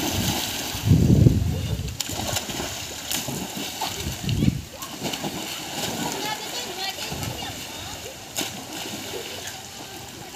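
Children jumping one after another into a swimming pool, with the loudest splash about a second in and another a little before the middle, followed by water sloshing as they swim. Children's voices and shouts carry over the water.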